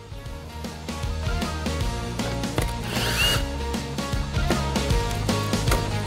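Background music with a steady beat. About three seconds in, a brief burst of a power driver undoing the bolts of an electric car's plastic underbody panel.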